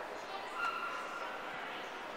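Indistinct voices of people in a large hall, echoing, with short high-pitched snatches of voice over a steady background murmur.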